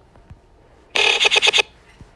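Stutter edit in a Sparta-style remix: a short pitched sample from the edited clip is played back as about six rapid repeats in under a second, starting about a second in and cutting off abruptly.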